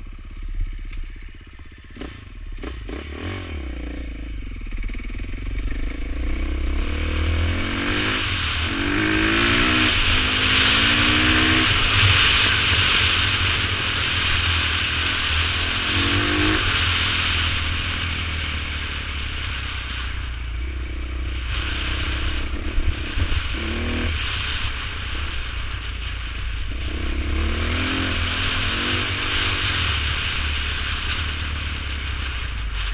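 Off-road dirt bike engine running on a trail ride, revving up and easing off again and again as the rider works the throttle and gears, over a steady rushing noise. Two sharp knocks about two-thirds of the way through.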